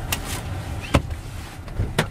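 Low rumble of a car engine, with a few sharp knocks and clicks; the loudest comes about a second in.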